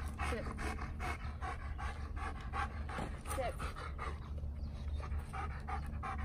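German Shepherd dog panting hard and fast in an even rhythm, out of breath from bite work.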